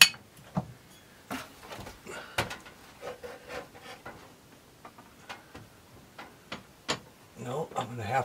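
Scattered sharp clicks and light knocks as a small flat-screen TV and its mount are handled and shifted into place under a wooden cabinet, the loudest click right at the start.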